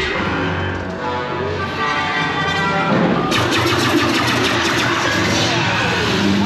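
Dark-ride soundtrack: music with sci-fi sound effects, and about three seconds in a sudden loud rushing, crackling noise sets in and carries on.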